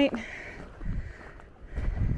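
Footsteps of a hiker climbing a steep, rocky dirt trail: dull low thuds about a second apart, with a little wind rumble on the microphone.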